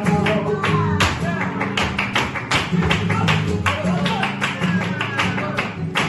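Flamenco rumba played live without singing: guitar strummed with sharp percussive strokes in a quick, even rhythm over sustained low chords.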